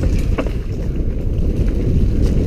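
Wind buffeting a helmet-mounted camera's microphone as a loud, steady low rumble, with the noise of tyres running fast over a rocky dirt trail and a few sharp clicks and knocks from the bike in the first half-second.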